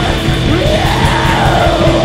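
Live rock band playing loud, distorted and dense, with a long yelled vocal note that rises in pitch about half a second in and slowly falls again.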